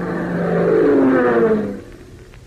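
Airplane engine sound effect used as a bridge in an old radio show: a loud drone whose pitch falls in the second half, then stops just before the end.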